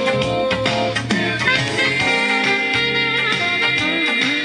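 Instrumental music played from a test record on a Polyvox TD-3000 direct-drive turntable, with a steady beat.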